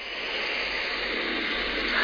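A steady hiss of noise that swells a little in the first half second and then holds even.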